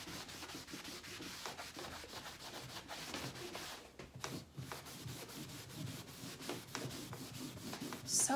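Cloth rag rubbed hard back and forth over a liming-waxed painted wooden dresser top, buffing the wax to a satin sheen: a steady scrubbing hiss made of quick strokes, letting up briefly about halfway.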